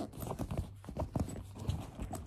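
A few light, irregular knocks and rubbing sounds from an object being handled close to the phone, about five taps over two seconds.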